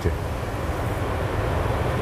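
Steady in-flight noise on the flight deck of an Airbus A380: a low rumble under an even rush of air.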